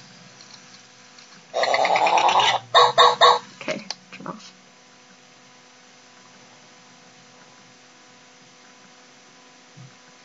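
Pink i-Dog robotic toy dog giving its electronic sound effects through its small speaker: one long call about a second and a half in, then a quick string of short yips and a couple of faint blips. After that a faint steady electrical hum.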